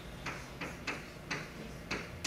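Chalk tapping and scratching on a blackboard as words are written: a quick run of sharp taps, about four a second.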